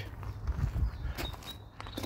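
Footsteps on gravel: a few soft steps in the first second, then quieter.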